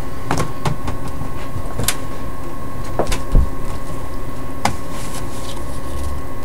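Playing cards being picked up and gathered on a perforated metal table: a handful of light clicks and taps, one low thump about halfway through, over a steady hum with a thin high tone.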